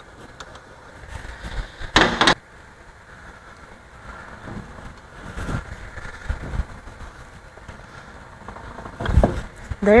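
Hand work on a pellet mill's die and roll assembly: a few light clicks, a short loud clatter about two seconds in, then quieter handling sounds as the die is turned by hand to see whether the rolls catch on it, with a thump just before the end.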